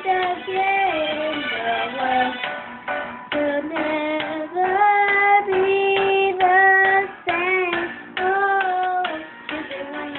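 A young girl singing, holding a run of notes of about half a second to a second each, with slides in pitch between them.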